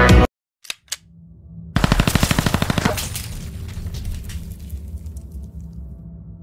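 Edited machine-gun sound effect: after two faint clicks, a rapid burst of about a dozen shots a second lasts just over a second, then dies away into a low rumbling hum.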